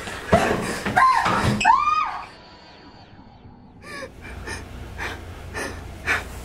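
A person gasping and whimpering in fright for about two seconds, then, after a short pause, breathing in quick gasps about twice a second.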